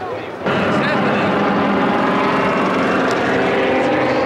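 Piston engines and propellers of a formation of vintage propeller aircraft, low-wing trainers and biplanes together, passing overhead. The sound comes in suddenly and loud about half a second in, then holds as a steady drone of several engines at once.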